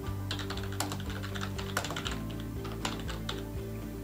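Computer keyboard being typed on, an irregular run of key clicks, over steady background music.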